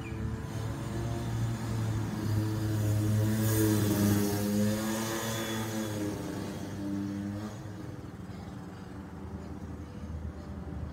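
A motor vehicle driving past. Its engine note grows louder to a peak about four seconds in, with a brief rush of road noise, then fades away.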